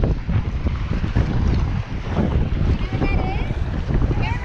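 Wind buffeting the microphone in an irregular low rumble, with surf washing in the background.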